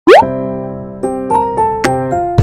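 A quick upward-sliding pop sound effect opens a light, playful keyboard-style intro tune of the kind used for children's animations. After the first second, new notes come in about every quarter to third of a second.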